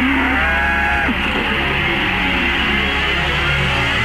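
Radio quiz jingle: music that opens with swooping, sliding tones in the first second or so, then settles into steady sustained music.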